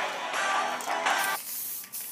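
Guitar music that cuts off about one and a half seconds in, giving way to the steady hiss of an aerosol can of coloured hairspray being sprayed.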